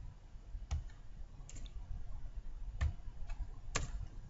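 About five sharp, irregularly spaced clicks of a computer mouse and keyboard as hash symbols are deleted line by line in a text file; the loudest comes near the end.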